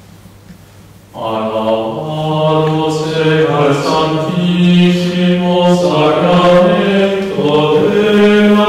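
A slow sung communion chant in a low male register, long held notes moving step by step. It starts suddenly about a second in, over a faint steady electrical hum.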